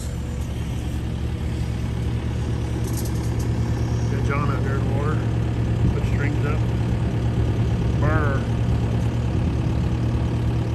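An engine running steadily with a low, even hum, typical of marine construction equipment or a work boat idling on the water.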